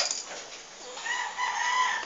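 A sharp click at the very start, then a rooster crowing: one long call beginning about halfway through.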